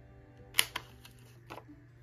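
Handheld corner rounder punch snapping shut as it cuts the corner off a piece of cardstock: a sharp click about half a second in, a quick second click right after as it springs back, and a lighter click about a second later.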